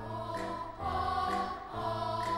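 Background music: a choir singing sustained chords over a low bass note, the chord changing about once a second.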